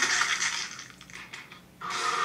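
Crunching gore sound effect from a cartoon dinosaur fight as the loser goes down, fading over the first second into a quiet lull; a new noisy sound starts just before the end.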